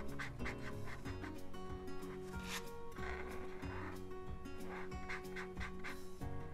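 Tombow ABT PRO alcohol-based marker scratching and rubbing across canvas in many short strokes as it colours in a shape, over soft background music.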